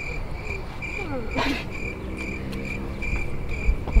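Cricket chirping: a steady run of short, evenly spaced high chirps, a few each second.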